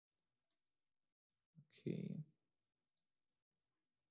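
Faint, sharp computer mouse clicks: a quick double click about half a second in and a single click about three seconds in.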